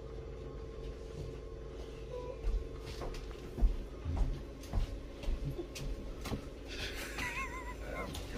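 Vehicle engine idling: a steady low drone with a held hum and scattered knocks. Near the end comes a brief wavering, warbling tone.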